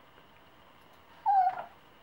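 Yorkshire terrier giving one short whine, slightly falling in pitch, about a second and a quarter in, eager to get at a butterfly ornament it cannot reach.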